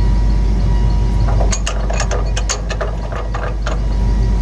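Pinion yoke on a Shuttlewagon's drive axle rocked and turned by hand, giving a quick run of metallic clicks and clunks as the pinion takes up its play, checked against tolerance and judged about within spec. A steady low mechanical rumble runs underneath.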